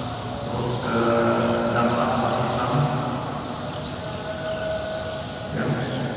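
A man's voice chanting in long, steady held notes, in the drawn-out style of Qur'anic recitation; the longest note, about two seconds, comes in the middle.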